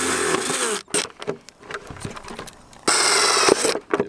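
Cordless drill boring holes through the side of a thin black plastic plant pot: two short runs of the drill, one at the start and one about three seconds in, with light knocks of the pot being handled between them.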